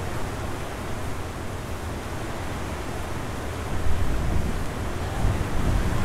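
Torrential rain falling, a steady noise with a heavy low end that grows somewhat louder near the end.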